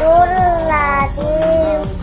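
A child's voice chanting Quran recitation in long, drawn-out notes that slide up and down in pitch.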